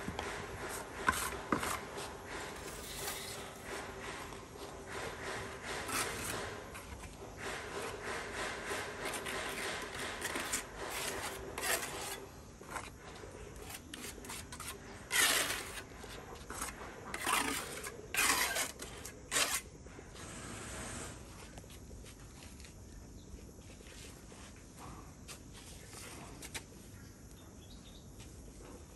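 Steel trowel scraping cement mortar against the edges of ceramic wall tiles and the concrete wall, in repeated scraping strokes, the loudest about fifteen to twenty seconds in, then fainter rubbing.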